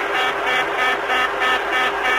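Boeing 747 cockpit warning horn sounding in a fast repeating beep, about four a second, over the steady hum of the flight deck on a cockpit voice recording. This is the intermittent cabin-altitude warning that follows the aircraft's loss of pressurisation.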